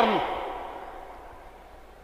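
A man's speech stops at the start, leaving a soft hiss that fades away steadily through the pause, with a faint low hum underneath.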